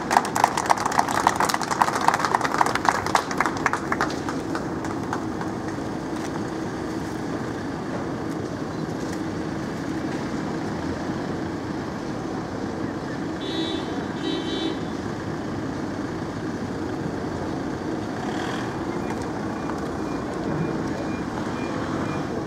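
Steady outdoor street background with traffic noise. A denser patter of fine clicks runs through the first four seconds, and a short two-pulse high tone sounds about two-thirds of the way through.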